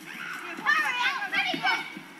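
Children's high-pitched shouts and yells during play, coming in a run of about a second from just over half a second in.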